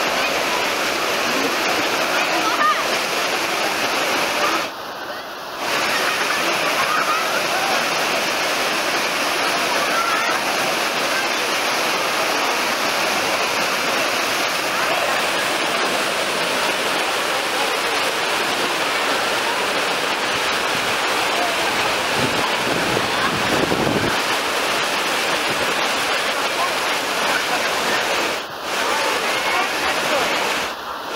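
Wave pool's machine-made waves rushing and breaking in a steady, surf-like wash of water, with the voices of many bathers mixed in.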